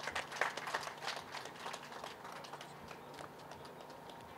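Scattered audience applause, irregular hand claps that are densest at first and thin out and fade over the last second or so.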